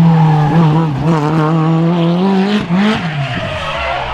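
Open-cockpit sports prototype race car engine pulling hard at high revs through a hairpin. Near three seconds there is a quick jump and drop in pitch, as at a gear change, and then the note fades as the car moves away.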